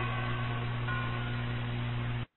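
Steady low hum and hiss of an old 1945 radio broadcast recording, with faint traces of music.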